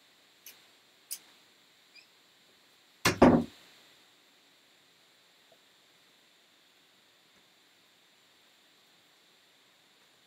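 A wooden room door being pushed shut: a few faint clicks, then one loud thud about three seconds in.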